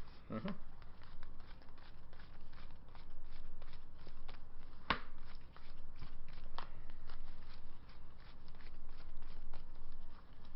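Trading cards being handled on a table: a steady patter of light clicks and flicks as cards are sorted and set down, with two sharper clicks about five and six and a half seconds in.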